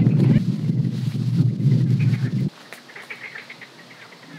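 Loud, blustery wind rumble on the microphone, which cuts off suddenly about two and a half seconds in. Faint bird chirps follow in the quieter outdoor background.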